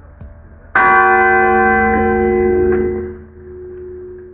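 A church bell tolled once as a funeral knell: one loud stroke about three-quarters of a second in, ringing with many overtones and fading away over about two and a half seconds.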